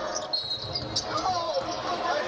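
Live basketball game sound on the court: a short high squeak of sneakers on the hardwood floor, a ball bounce about a second in, and arena crowd and voices underneath.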